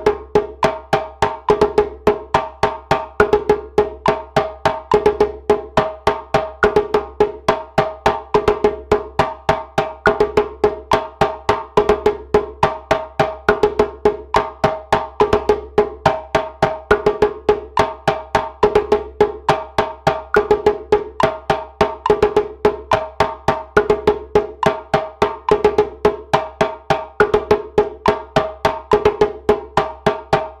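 Djembe played with bare hands, a steady practice pattern of tones and slaps repeated at 70 BPM, about four to five strokes a second.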